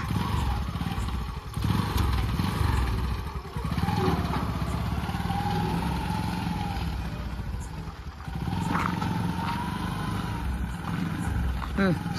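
Motorcycle engine of a motorcycle-based three-wheeled cargo trolley running at low speed as the trolley pulls forward. The engine note dips briefly a few times.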